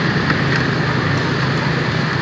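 Motor scooter engine running steadily while riding through street traffic, a low hum under a steady rush of road and wind noise.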